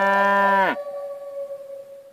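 A cow's moo, one loud call that stops abruptly less than a second in. Under it a held flute-like music note carries on and fades away near the end.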